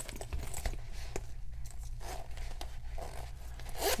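Metal zipper on a wallet being worked in a few short strokes, with scattered clicks and handling noise as the wallet is turned over.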